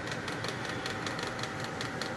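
A machine running steadily in the background, with a fast, even ticking and a faint steady whine.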